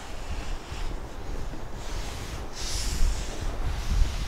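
A large cardboard box being handled and turned on a table, with low rumbling handling noise and a brief rustle about three seconds in.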